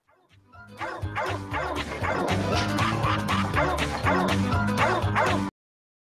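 Dogs barking and yipping over music with a steady beat, cutting off abruptly near the end.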